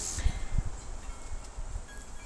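Gusty wind rumbling on the microphone in uneven low bursts, with a few faint, thin, high ringing tones over it.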